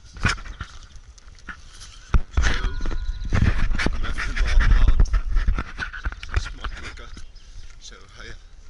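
Wind buffeting and handling noise on a handheld camera's microphone: a deep rumble with knocks and clicks that starts suddenly about two seconds in and is loudest until about six seconds, then dies down.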